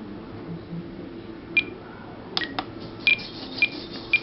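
Spektrum DX18 transmitter giving short, high beeps as its scroll roller is turned and pressed through a menu, with a few clicks from the roller between them.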